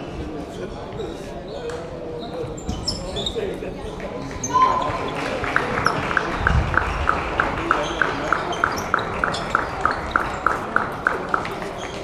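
Table tennis rally: the ball clicking off bats and table in a steady rhythm, about three to four hits a second, starting about five seconds in and stopping shortly before the end. Voices and chatter of a large sports hall run underneath.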